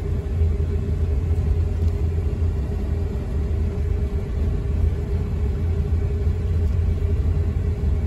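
Moving car heard from inside the cabin: a steady low rumble of road and engine noise, with a faint steady hum above it.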